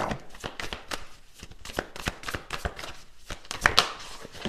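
Tarot cards being handled and shuffled: a quick, irregular run of soft card clicks and taps, busiest near the end.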